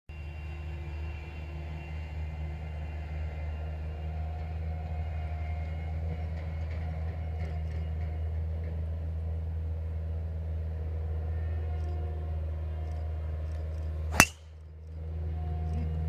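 A driver striking a golf ball off the tee: one sharp crack about fourteen seconds in, over a steady low background rumble.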